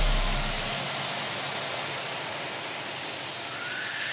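White-noise sweep in the breakdown of an electronic trap track: a deep bass note dies away in the first second, leaving a wash of hiss that dips and then swells again with a rising sweep near the end, building back toward the beat.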